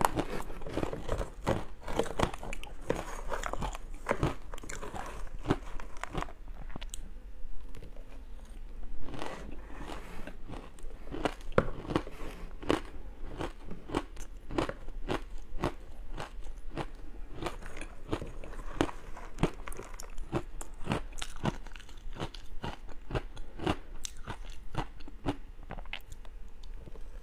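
Chewing and crunching of frozen matcha-powdered ice, a dense run of sharp, irregular crunches.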